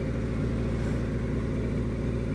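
1988 Honda CBR600F1's inline-four engine running at a steady pitch as the bike rides through a turn, with wind noise on the helmet-mounted camera's microphone.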